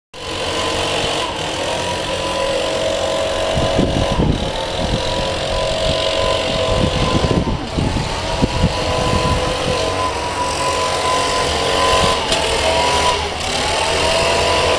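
A steady mechanical hum with several steady tones that dip briefly in pitch a few times, mixed with irregular low rumbling.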